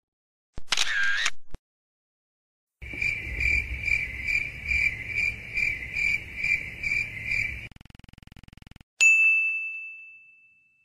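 A series of electronic sound effects cut apart by dead silence. A short tone about a second in, then a pulsing beep of about two pulses a second for nearly five seconds, a faint buzz, and a single ding near the end that rings out.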